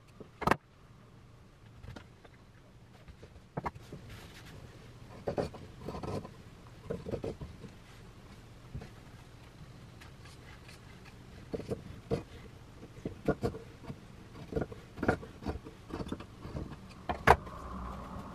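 Scissors cutting along the waistline of a silk petticoat: a run of irregular snips, with the rustle of the fabric being handled.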